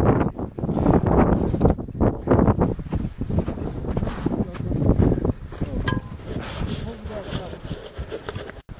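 Wind buffeting the camera microphone in gusts, with indistinct talk between climbers.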